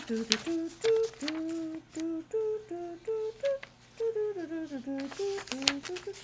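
A woman humming an idle, wandering tune in short held notes that step up and down. Paper pages rustle now and then as she leafs through a booklet.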